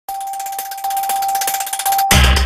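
Electronic logo sting of a TV news channel's opening ident: one steady high tone held throughout, with a fast, even shimmer of tiny ticks over it.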